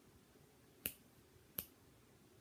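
Two short, sharp clicks, about three-quarters of a second apart, over otherwise near-silent room tone.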